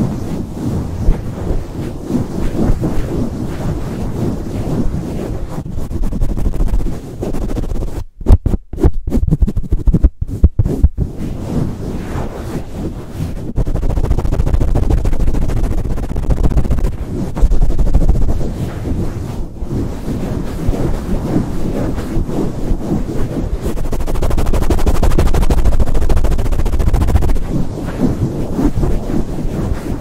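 Fast, aggressive rubbing and swirling of a hand and sleeve directly over the grille of a Blue Yeti microphone, giving a loud close-up rumbling scrape. About eight to eleven seconds in, the rubbing breaks into a few sharp knocks with short silent gaps between them.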